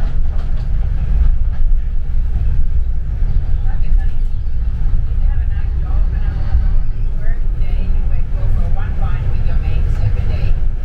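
Steady low rumble of a London double-decker bus in motion, heard from the upper deck.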